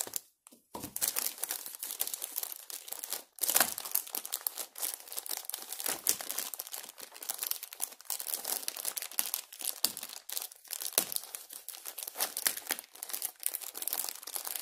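Thin clear plastic packaging film crinkling and rustling continuously as it is handled and pulled off a stack of small clear plastic storage containers. A louder sharp click sounds about three and a half seconds in.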